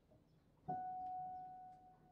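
A single clear, bell-like note struck once, about two-thirds of a second in, ringing on one steady pitch and slowly fading.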